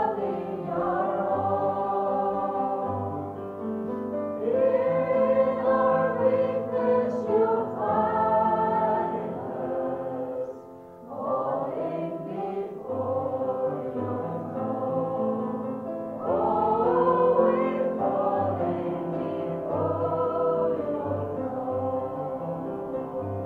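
A small group of female voices singing a worship song together, in long held phrases with a short break between phrases about halfway through.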